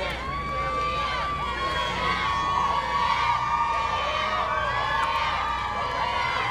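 Crowd of fans and photographers shouting and cheering, many voices calling over one another, with one high voice held for several seconds.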